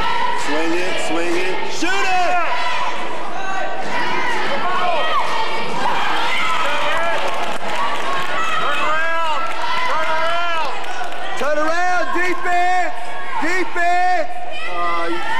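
Basketball game in a gym: sneakers squeak on the hardwood court in short arched chirps, clustered in a few runs of play, over a ball bouncing and a crowd talking.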